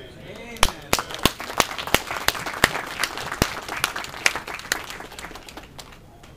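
Small audience applauding at the end of a song, a few close, sharp claps about three a second standing out over the rest, the applause dying away near the end.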